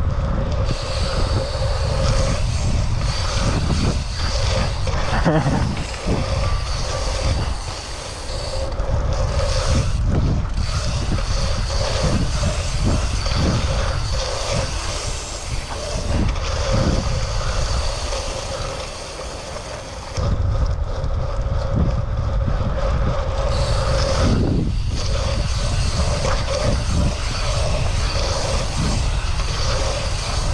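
Wind buffeting a bike-mounted camera microphone and tyres rolling fast over the track surface as a BMX bike is ridden around the track. A steady higher buzz runs under it and cuts out briefly a few times.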